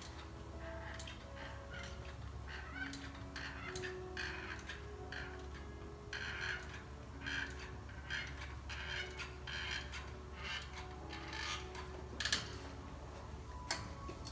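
Irregular short clicks and scrapes of hand-tool work at a crypt opening, over faint slow melodic notes and a low steady hum.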